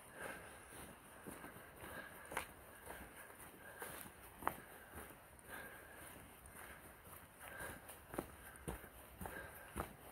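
Faint footsteps of a hiker walking on a dirt trail covered in dry leaves, with irregular scuffs and sharp clicks from stepping on the litter and stones.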